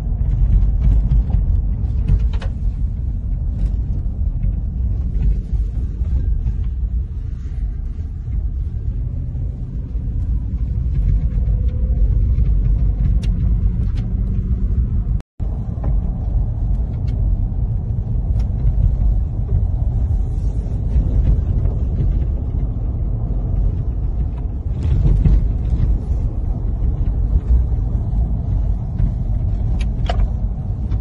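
Low, steady rumble of a car driving over a rough unpaved road, heard from inside the cabin, with a few light knocks. The sound cuts out for a moment about halfway through.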